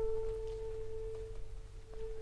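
A single long-held note from a wind instrument, steady in pitch and almost a pure tone, slowly fading away.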